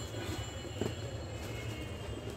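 A polyester travel bag being handled and folded: soft rustles of the fabric, one slightly louder a little under a second in, over a steady low background rumble.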